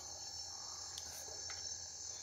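Night insect chorus: a steady, continuous high-pitched trill, with a couple of faint ticks partway through.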